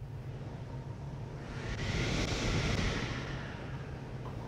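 A steady low rumble with a hiss that swells up about a second and a half in and fades back out before the end, like a whoosh.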